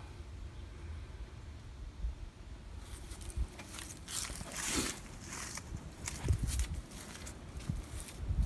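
Footsteps and rustling as someone walks around outdoors holding the recording phone, over a low rumble; the scuffs and rustles begin about three seconds in.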